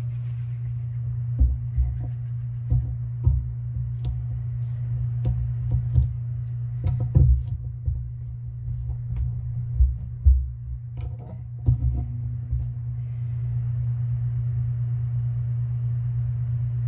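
Hands handling modeling clay on a tabletop: irregular soft knocks and thumps as pieces are pressed and set down, stopping a few seconds before the end, over a steady low hum.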